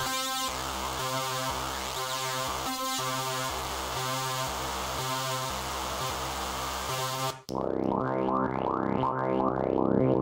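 Farbrausch V2 software synthesizer playing its buzzy 'Lethal PWM' pulse-width-modulation lead preset in a repeating pattern of notes. It cuts off abruptly about seven seconds in. The next preset follows, with repeated downward-sweeping notes that grow louder.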